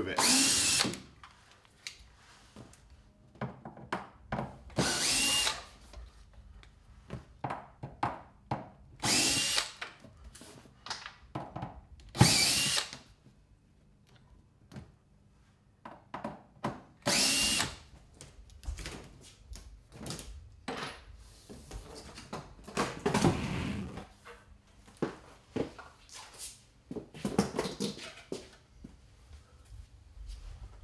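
Power drill run in short bursts of about a second, several times over, most likely backing out the fasteners holding a piece of corrugated plastic to a joist. Small clicks and knocks of handling come between the bursts.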